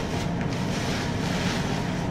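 Steady rushing background noise with a low hum underneath.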